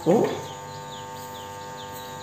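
A small bird chirping repeatedly, short falling chirps about three a second, over a steady hum.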